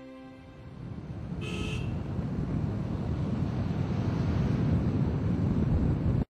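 Outdoor rumbling noise of a vehicle with wind on the microphone, growing steadily louder and cut off abruptly at the end. A brief high tone sounds about a second and a half in.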